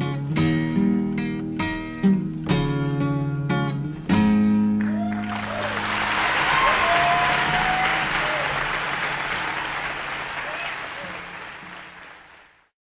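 Acoustic guitar playing out the song: a few strummed chords, then a final loud chord struck about four seconds in and left to ring. About a second later the audience breaks into applause with a few cheers, which fades out near the end.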